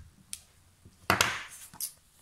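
Handling knocks on a craft desk: a clear acrylic stamp block is lifted off the card and set down, with the loudest knock about a second in, then another short knock as the card stock is picked up near the end.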